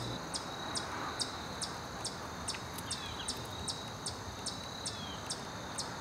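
Outdoor insect chorus, crickets or similar: a steady high trill with a short chirp repeating evenly a little more than twice a second.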